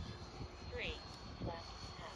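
Twin electric ducted fans of a Freewing Me 262 RC jet flying at a distance, a steady thin high whine.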